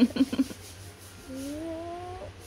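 Young baby cooing: a few short voiced sounds at the start, then one long gently rising coo starting a little past halfway.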